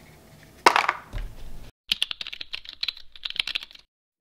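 A sharp clack and a moment of handling, then a fast run of computer keyboard typing clicks lasting about two seconds.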